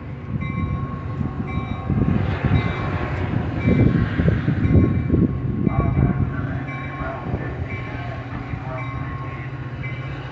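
Metra bilevel commuter cars rolling past, a steady rumble of steel wheels on rail with a spell of fast clatter over the rail joints in the middle.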